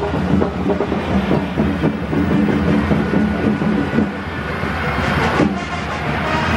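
Parade float rolling along the road: a loud, continuous rattling rumble.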